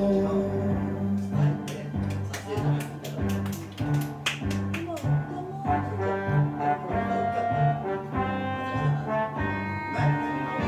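Karaoke backing track playing an instrumental break led by brass over a steady, rhythmic bass line, with a run of sharp percussion hits in the first half.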